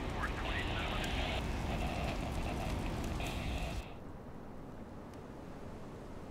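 Outdoor noise at a wildfire: a steady low rumble with faint, indistinct voices. About four seconds in it cuts abruptly to a quieter, even hiss.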